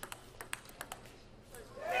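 A table tennis ball clicking sharply off the bats and table in a fast rally, several quick hits at uneven spacing. Voices rise near the end as the point finishes.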